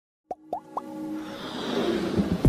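Animated logo-intro sound effects: three quick rising pops about a quarter second apart, starting a third of a second in, then a swelling whoosh that builds steadily in loudness.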